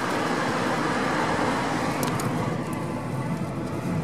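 Steady road and tyre noise of a car driving, heard from the moving car, with a brief click about two seconds in.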